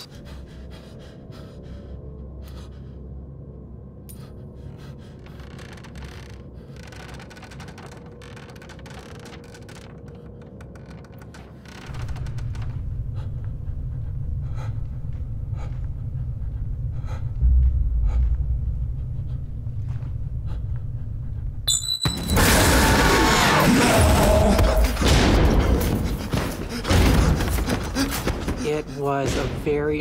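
Low, ominous music drone with a person breathing heavily; the drone grows louder about twelve seconds in. Near the end comes a loud burst of pounding, two hands slamming against a door.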